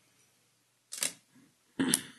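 A pause in a meeting room over the microphone feed: a single short, sharp click about a second in, then a brief spoken "uh" near the end.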